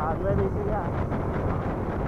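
Wind rushing over the camera microphone together with the 100cc single-cylinder engine of a Kawasaki Bajaj CT100 motorcycle running at road speed, a steady low rumbling noise.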